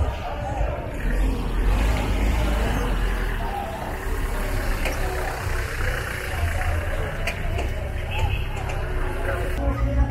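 Voices of a street crowd over a steady low rumble of vehicles.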